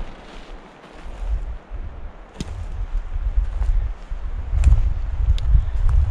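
Wind rumbling on the microphone, gusting louder toward the end, with four sharp clicks about a second apart.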